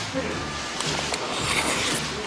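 A person slurping up a mouthful of long food strands and chewing, over steady background music, with a louder noisy slurp about one and a half seconds in.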